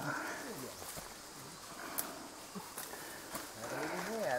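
Faint voices of people some way off, with a few light clicks in between.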